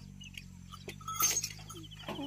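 Scattered faint clicks and rustles of the bullocks' wooden yoke, ropes and harness being handled, with one brief louder scrape a little past halfway.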